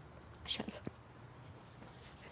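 Quiet room tone with a few faint, short breathy sounds from a person about half a second in.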